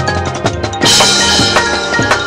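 Marching band playing, with the drums and percussion prominent: rapid drum hits over held band notes, and a loud crash about a second in.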